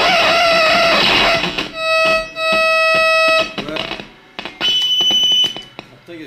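Electronic tones from a small handmade noise box worked by its knobs: a warbling, wavering tone, then a steady buzzy tone that breaks off briefly, then a short high fluttering tone near the end.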